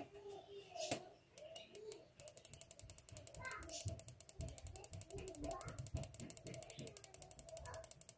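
Spark plug on a homemade HEI ignition rig (four-pin GM high-energy ignition module, coil and pickup coil) firing repeatedly. The sparks give a faint, rapid, even ticking of about ten snaps a second, starting about two seconds in.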